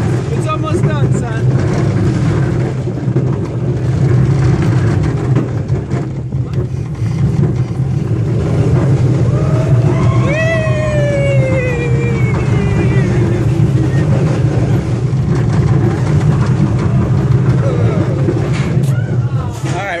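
California Screamin' steel roller coaster train running on its track with a loud steady rumble, and a long falling whine about halfway through.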